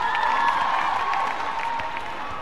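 Arena crowd cheering and clapping after a point is won, a broad swell of voices that eases off by the end.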